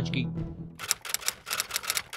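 Fast, even mechanical ticking, about eight to ten ticks a second, starting about a second in: a clock-ticking sound effect run quickly to show time passing.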